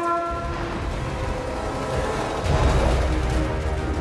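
Film score music with long held notes, over a deep low rumble that swells about two and a half seconds in.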